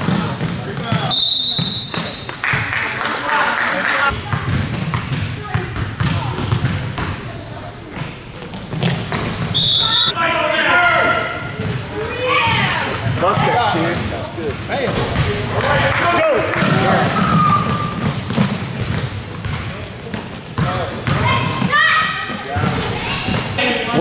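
Youth basketball game in a gym: the ball bouncing on the hardwood floor as it is dribbled, brief high sneaker squeaks, and voices shouting, all echoing in the large hall.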